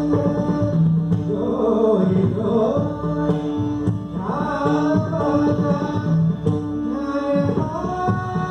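Live Indian devotional song: a singing voice sliding between notes over long held low notes, with light tabla strokes.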